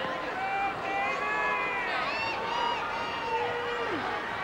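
Crowd chatter: several indistinct voices talking over one another.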